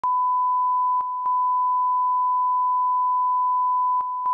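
1 kHz broadcast line-up test tone played with colour bars: a single steady pure tone that dips briefly about a second in.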